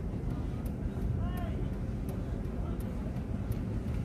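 Car interior noise: a steady low rumble of engine and tyres as the car rolls slowly, with a brief faint voice about a second in.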